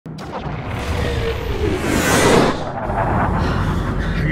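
Film sound design of a sci-fi combat drone flying past: a whoosh that swells to a peak a little after two seconds in and then falls away, over a low rumble and score music.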